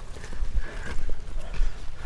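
Footsteps on a dirt track, soft irregular steps over a low rumble on the microphone.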